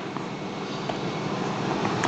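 Steady rushing background noise that slowly grows louder, with a few faint ticks.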